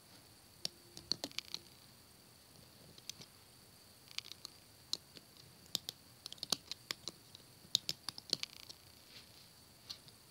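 Loom hook and rubber bands lightly clicking and snapping against the plastic pegs of a rubber-band loom as the bottom bands are looped over, in irregular clicks with a few quick clusters.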